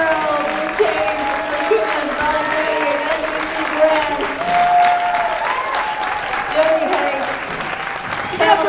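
Audience applauding steadily, with many voices calling out over the clapping.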